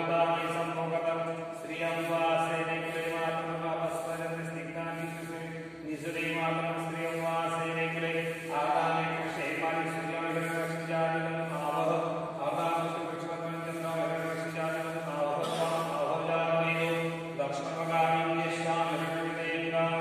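Male voices chanting Hindu puja mantras in a steady recitation, in phrases of about two seconds over a continuous low held tone.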